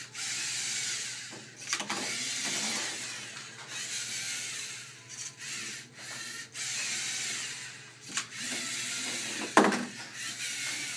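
LEGO Mindstorms NXT robot's servo motors and plastic gears whirring in runs of a second or two as it drives and works its arm, with short pauses between. A sharp knock comes near the end.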